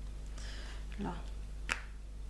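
A single sharp, brief click near the end: a square resin drill snapping into place on a diamond painting canvas under a drill pen.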